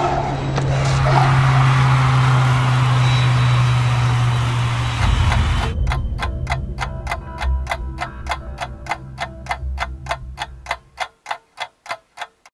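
A short laugh, then a steady low hum under a rushing whoosh for about five seconds. After that comes an even, rapid ticking like a clock, about three to four ticks a second, fading out near the end.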